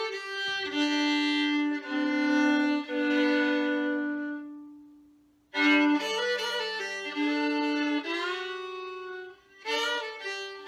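Solo fiddle playing an old-time tune, bowing double stops with a steady lower note held under the melody. The notes die away to a short pause about five seconds in, and the playing resumes with a loud accented stroke.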